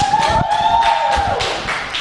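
A long, high-pitched whooping cheer that rises and is held for over a second before fading, over laughter and cheering from a small group.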